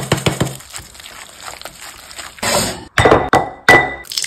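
Ingredients dropping into a clear glass mixing bowl: a run of small ticks, a short rustling rush about two and a half seconds in, then two sharp clinks on the glass near the end, each leaving a brief ring.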